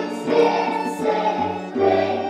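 A class of young children singing together as a choir, performing a romance, an old Spanish narrative ballad, with notes held and changing about every half second.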